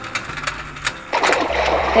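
Toy fishing game's turning mechanism clicking through its gears, then a water-splash sound effect about a second in.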